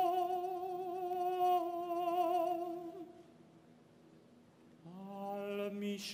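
A man's solo voice chanting a Hebrew prayer: one long held note that takes on a vibrato and stops about three seconds in, a pause of about two seconds, then a new phrase starting with an upward slide near the end.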